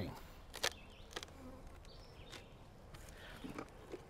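Honeybees buzzing faintly around an open hive, with a few light clicks and knocks scattered through.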